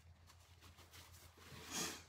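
Quiet room tone with a faint low hum, and a short soft hiss near the end.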